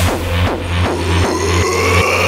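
Dark techno track: a fast, steady kick drum and bass pulse, with a rising tone building in over the second half.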